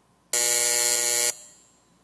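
An electric buzzer sounds once for about a second, a loud steady buzzing tone that stops sharply, leaving a short echo in the hall. It signals the end of a minute of silence.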